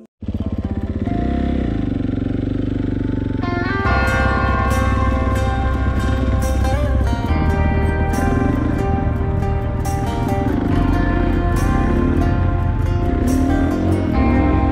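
Dirt bike engine running and revving as it is ridden along a trail, heard from the rider's helmet camera. Music, a song's instrumental intro, comes in over it about four seconds in and stays on top.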